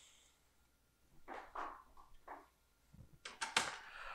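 Faint handling noises, then a short clatter of metallic knocks near the end as a stainless-steel kettle is set back down on a gas stove's grate.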